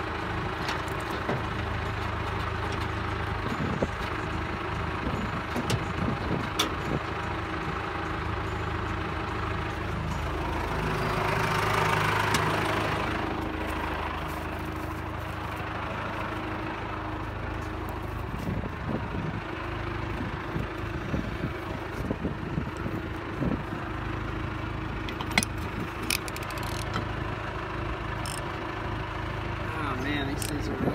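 Tractor engine idling steadily, swelling louder for a few seconds around the middle, with scattered metallic clicks and knocks from work on the trailer wheel's lug nuts.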